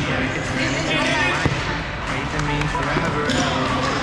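Volleyball being played in a large hall: a few sharp smacks of the ball being hit and striking the court, mixed with players' shouts and calls.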